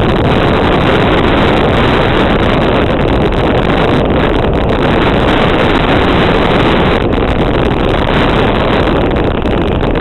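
Wind buffeting an old GoPro's microphone at speed on a mountain bike, mixed with tyres rumbling over a dry dirt trail, as one loud, steady rush. It jumps louder right at the start.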